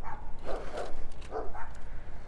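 A cyclist panting hard, about four quick breaths close to a lapel microphone while pedaling, over a steady low rumble.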